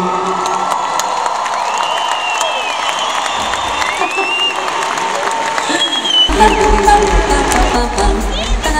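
Large concert crowd cheering and whistling between songs, then the band comes in with heavy bass about six seconds in.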